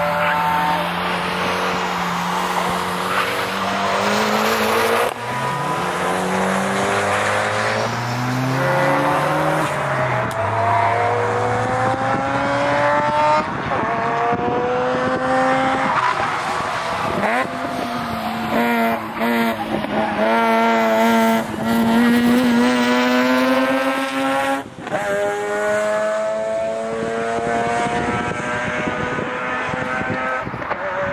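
A car's engine being driven hard on a track, its note climbing and falling again and again with a few brief cuts as it comes off and back on the throttle, while its tyres squeal through the corner.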